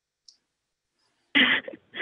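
Silence with one faint click, then about 1.4 s in a person breaks into a short, breathy laugh.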